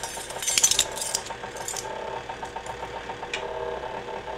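Electric tilt-head stand mixer running steadily on low speed, its beater working cake batter in a stainless steel bowl, with a steady motor hum. Light metallic clinks and rattles over the first couple of seconds, and one more click later.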